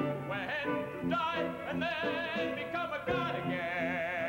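A voice singing a melody with wide vibrato over instrumental accompaniment with a steady, repeating low pulse, settling near the end on a long held high note.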